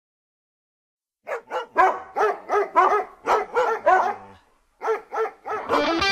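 A dog barking: a quick run of about a dozen barks, a short pause, then a few more barks as the music comes in at the very end.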